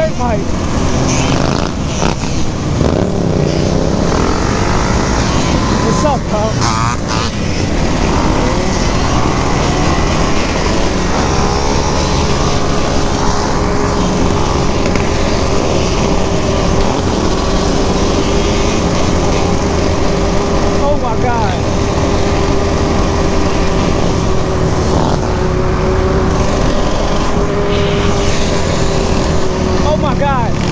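Engines of a group of dirt bikes and the camera rider's machine running along a street under heavy wind rush on the camera. From about ten seconds in, one engine holds a steady drone at cruising speed. Voices are mixed in during the first few seconds.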